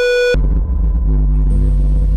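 Cinematic sound-design hit: a bright ringing tone that cuts off after about a third of a second, giving way to a loud, deep bass rumble that holds, with a faint high whine coming in partway through.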